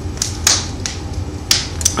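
Several short, sharp clicks, about five in two seconds, over a steady low room hum.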